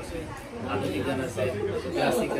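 People talking in conversation, more than one voice at a time.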